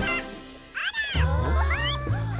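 A cartoon character's high, squeaky vocalizing, fading out in the first second. About a second in, background music with a low bass starts, with high gliding squeaks over it.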